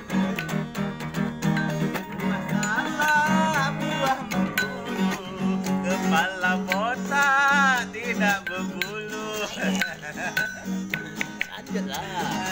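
Acoustic guitar strummed as a steady accompaniment while a voice sings long notes over it, the pitch wavering and sliding. The singing is strongest about seven to eight seconds in.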